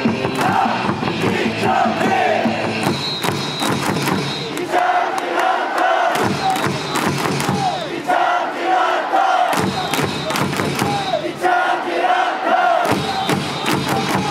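Baseball stadium crowd chanting a cheer together over amplified cheer music, with many sharp claps beating along. The music's bass drops out twice partway through, leaving mostly the chanting voices.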